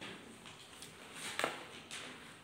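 Ballpoint pen scratching on paper as a chemical formula is finished, with a few short clicks and taps, the loudest about one and a half seconds in.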